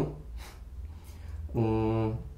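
A pause in conversation over a low steady hum, ended near the close by a man's held hesitation sound, a drawn-out "eee" filler.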